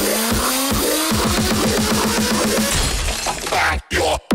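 Dubstep played in a DJ set: a rising synth sweep, then rapid repeated bass stabs, with the music cutting out briefly near the end.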